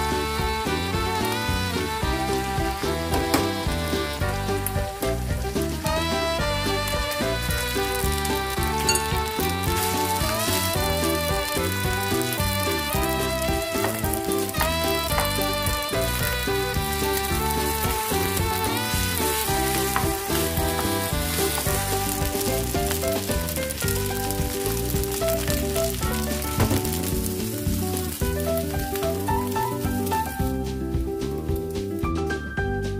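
Sliced shallots and chicken, and later rice, sizzling in hot oil in a frying pan as they are stirred, with background music.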